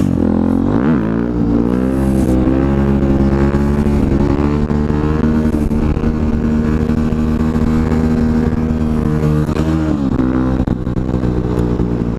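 KTM supermoto engine revving up over the first couple of seconds, then held at steady high revs through a wheelie, with wind rushing on the microphone. The revs drop briefly and pick up again near the end.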